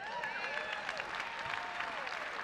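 Congregation applauding, with a few faint voices calling out over the clapping.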